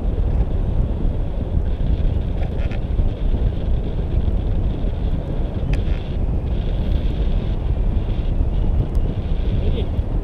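Wind from the glider's airspeed buffeting the action camera's microphone in a tandem paraglider flight: a steady, loud, low rush of wind noise.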